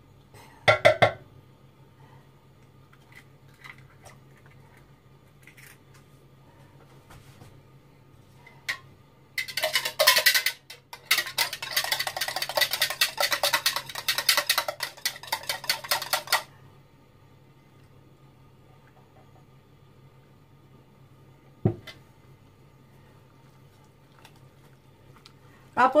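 A knife rapping an egg shell, a few quick taps about a second in; then a wire whisk rattles fast against a plastic measuring jug for about seven seconds, beating the egg. One knock later on, over a low steady hum.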